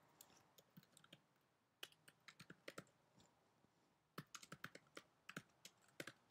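Faint typing on a computer keyboard: quick runs of key clicks, broken by short pauses of about a second.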